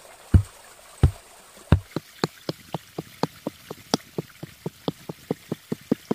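Wooden pole rammed down to tamp loose earth. First three heavy, dull thuds come about two-thirds of a second apart, then a quicker run of lighter knocks, about four a second and speeding up.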